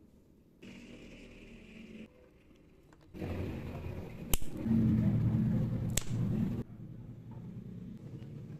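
Scissors cutting a white plastic strip: two sharp snips about a second and a half apart, amid rustling and handling of the plastic pieces.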